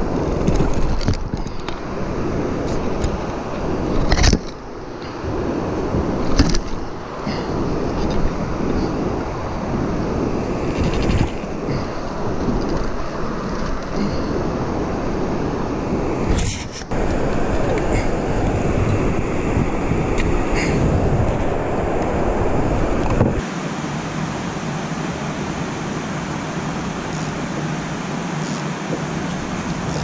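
Steady low rushing noise with a few sharp knocks and clicks from handling a baitcasting rod and reel while fighting a fish. The deepest part of the rushing drops away about three-quarters of the way through.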